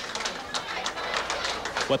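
A small audience applauding with scattered hand claps.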